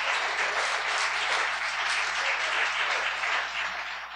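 A small audience applauding steadily, the clapping easing off a little near the end.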